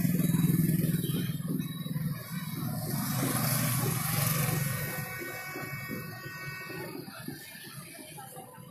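Road traffic passing close by: motorbike engines and a coach's engine, loudest in the first half and easing off after about five seconds.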